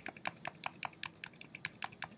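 Keys on a computer keyboard pressed in quick succession, about nine or ten sharp clicks a second.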